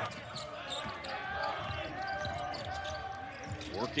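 Basketball being dribbled on a hardwood court, with sneakers squeaking and players' voices on the court, heard with little or no crowd noise.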